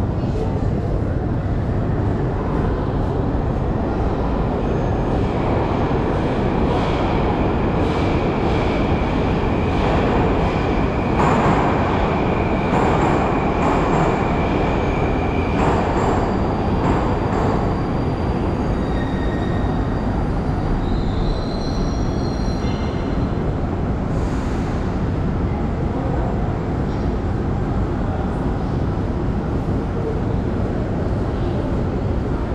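Moscow Metro train running at the platform, a steady noise with a high squeal held for about ten seconds through the middle.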